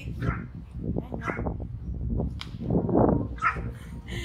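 Small white house dogs barking several times from behind a glass shop door, wanting to be let out.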